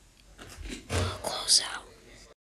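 A voice whispering, with the loudest whispering about a second in.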